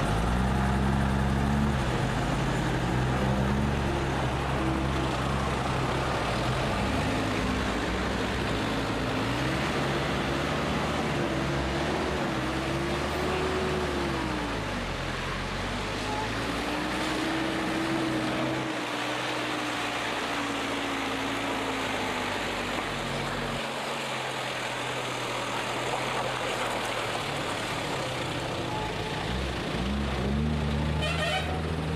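Vehicle engine running at low speed on a rough gravel road, its revs rising and falling again and again over a steady low rumble and road noise.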